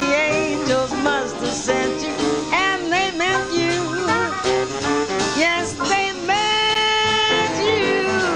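Small swing jazz band playing, with a cornet leading in curving, bending phrases over piano, string bass, guitar and drums. About six seconds in, the cornet holds one long note for about a second.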